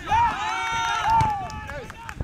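Football players shouting on the pitch: several raised, high-pitched voices call out at once for about a second and a half, then die away.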